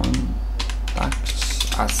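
Typing on a computer keyboard: a quick run of key clicks as a short phrase is typed in, over a steady low hum.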